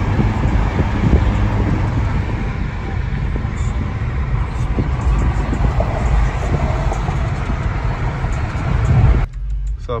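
Steady road and engine noise inside a car moving at freeway speed, a dense low rumble. It cuts off suddenly near the end, leaving a much quieter background.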